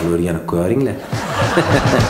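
A man chuckling, then music with a beat comes in about a second in.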